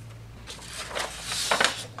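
Sheet of white paper rustling and crackling as it is lifted and handled, loudest about a second and a half in, over a steady low hum.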